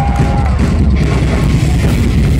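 Live heavy hardcore band playing loud through a club PA, just after kicking into a song: dense distorted guitars, bass and drums. A shouted voice trails off in the first half-second.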